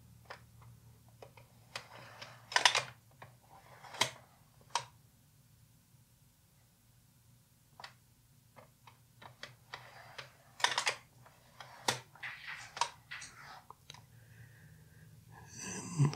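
Light clicks and rustles of 35mm slides being handled and swapped, in two clusters with a quiet pause of about two seconds between them.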